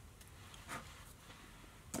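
Quiet room tone with one faint, brief soft sound about two-thirds of a second in; a man's voice starts at the very end.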